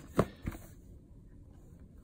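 A shrink-wrapped trading-card box handled by hand, with one sharp tap against it early on and a softer knock shortly after, then only faint handling.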